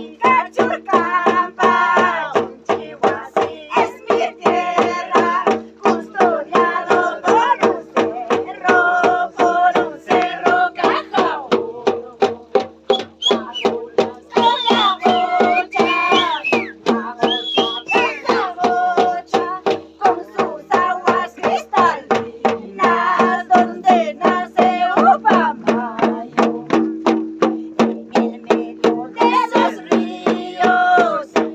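Andean Santiago festival music: high women's singing over small tinya hand drums beaten steadily at about two to three strokes a second, with a steady held tone underneath.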